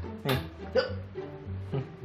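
Background music with a plucked-string tune and steady bass notes, over which a man lets out three short yelps with falling pitch, the loudest about a third of a second in. The yelps are cries of pain as a healer presses hard on his belly.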